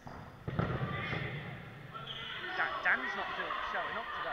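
A dodgeball thuds sharply about half a second in. Several players' voices shout over it, echoing in a large sports hall.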